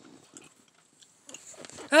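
Faint rustling and light knocks of small toy figures being handled in a cardboard box, getting busier in the last half second.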